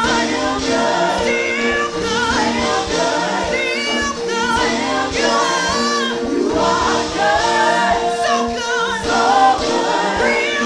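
A group of women singing a gospel worship song together into microphones, with instrumental accompaniment underneath.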